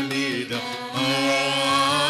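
Voices singing a Telugu devotional song in Carnatic style, over a steady low drone. A long note is held from about halfway through and glides upward near the end.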